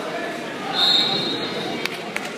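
Background chatter of spectators in a gymnasium, with one brief high-pitched tone held for under a second near the middle.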